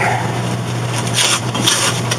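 A steady low hum with two short rustling scrapes, one about a second in and one near the end, as of something being handled.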